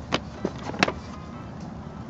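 A few light taps, three short clicks in the first second, from a hand patting and pressing a molded rubber floor liner, over a faint steady low hum.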